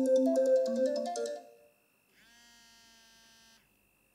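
Mobile phone ringing with a melodic ringtone of quick notes, which cuts off about a second and a half in: the call goes unanswered. A faint held musical tone follows briefly.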